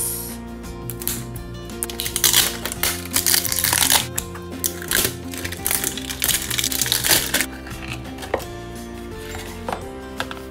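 Background music with a steady beat. From about two seconds in, thin plastic shrink-wrap crinkles and rustles for several seconds as it is peeled off a toy's cardboard box.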